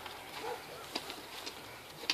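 Quiet outdoor background with a few faint clicks and a short faint low call about half a second in.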